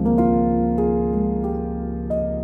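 Solo grand piano playing slow, calm music: a chord struck at the start, then single notes added every half second or so over held, ringing notes.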